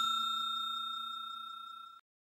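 Ringing tail of a bell-chime sound effect for an animated notification-bell icon, one clear note fading steadily and then cutting off suddenly at the end.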